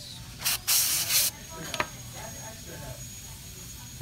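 Two quick blasts of blown air, a short one about half a second in and a longer one right after, blowing loose amalgam particles off a freshly carved amalgam filling.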